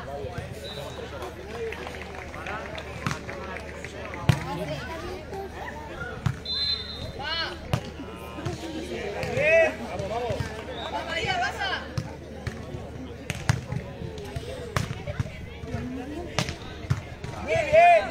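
A volleyball being struck by hands during a beach volleyball rally: sharp slaps, a loud one about four seconds in, mixed with shouted calls from players and supporters.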